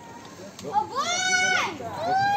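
A child's high-pitched, drawn-out call, about a second long, rising and then falling in pitch, starting just under a second in.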